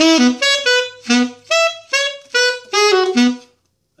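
Alto saxophone playing a quick phrase of about a dozen short, separate notes, the first part of a riff run through at tempo; the phrase ends about three and a half seconds in.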